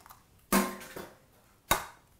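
Two sharp knocks against a ceramic bowl, about half a second in and near the end; the second is an egg being cracked on the bowl's rim.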